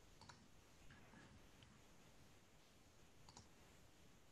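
Near silence on a video call, with a few faint clicks.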